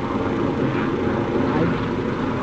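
Helicopter flying overhead, a steady noise with no let-up.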